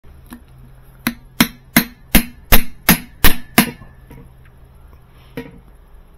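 A claw hammer tapping a screwdriver or punch against a Whirlpool washer transmission at its worm gear shaft seal: eight sharp metal-on-metal strikes about three a second, after one light tap, then a single faint knock near the end.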